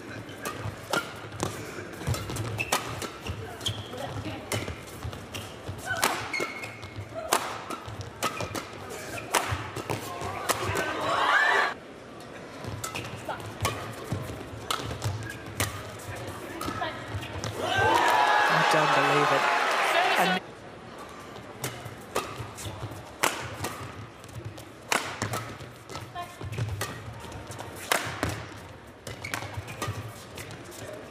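Badminton rally: a string of sharp racket hits on the shuttlecock. A little past the middle comes about two seconds of loud shouting and cheering as a point is won, stopping suddenly.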